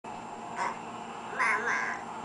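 A toddler's high-pitched vocal sounds without words: a short one about half a second in, then a longer one near the end whose pitch bends up and down.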